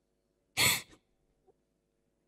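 A girl's single short sobbing breath, close on a handheld microphone, about half a second in.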